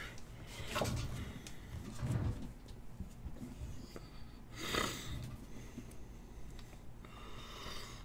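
A man's faint breathing close to the microphone in a small, quiet room, with a short sniff or exhale a little past halfway.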